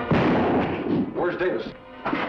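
A single revolver shot, a sudden loud bang just after the start that rings off over about a second, with dramatic background music.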